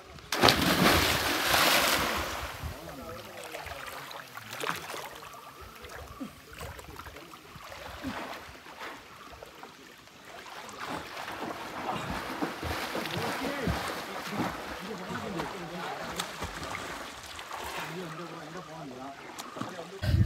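A person diving into a deep pond: a loud splash about half a second in, with about two seconds of churning water after it. Then quieter lapping water.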